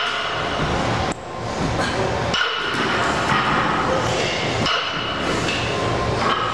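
Loaded deadlift barbell, 225 lb of iron plates, being pulled from the floor: a thud as the plates leave or meet the rubber floor and a clink of plates shifting on the sleeves, over gym background music.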